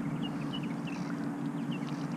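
A steady low motor drone, with short high chirps from birds scattered over it, about eight in two seconds.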